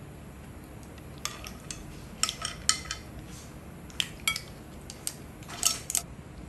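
Serving utensils clinking and scraping against a frying pan and a glass serving bowl as spaghetti with clams is dished out: a series of sharp clinks in small clusters, some ringing briefly.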